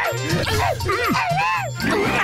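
Animated-film soundtrack: background music with a repeating bass beat, overlaid with short rising-and-falling yelping calls.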